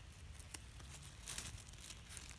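Faint rustling and crackling of dry fallen leaves, with a slightly louder rustle about a second and a half in.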